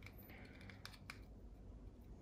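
Faint handling noise: light clicks and rustling as a small plastic module and its thin wire leads are turned over in the hands, with a cluster of clicks about a second in.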